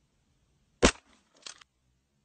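A single rifle shot, sharp and loud, just under a second in, followed about half a second later by a fainter, shorter crack.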